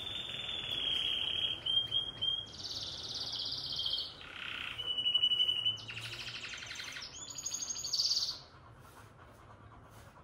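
Bird calls: high thin whistles held for a second or two, alternating with buzzy rattling trills, stopping about eight and a half seconds in.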